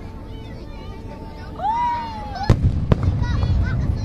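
Aerial firework shells bursting: two sharp bangs about two and a half and three seconds in, after the shells have risen on their tails. Spectators' voices follow.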